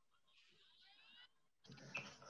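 Near silence with faint soft scratching of a fine watercolour brush moving over paper: a light stroke about half a second in and a slightly louder one near the end.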